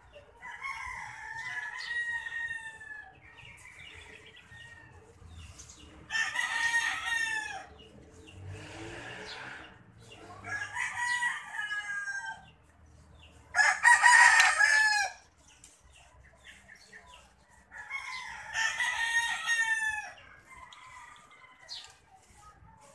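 Roosters crowing: five long crows, one every few seconds, each ending in a falling tail; the loudest comes about two-thirds of the way through.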